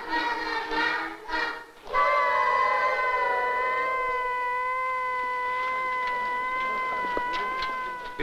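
Children singing together, cut off about two seconds in by a works whistle: one long, steady blast held for about six seconds, sounding the end of the shift.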